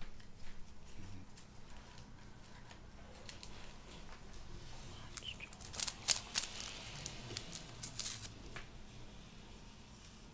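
Handling noises from small objects on a table: light rustling and crinkling with scattered sharp clicks, thickest in a quick run of about a dozen loud ticks from about six seconds in to eight and a half.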